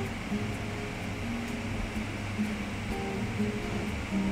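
Background music: a plucked string instrument playing a light melody of short notes.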